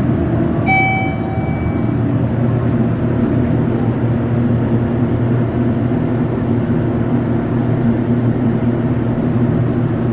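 Schindler hydraulic elevator's arrival chime, a single ding about a second in that fades out, over a steady low hum that runs on through the ride.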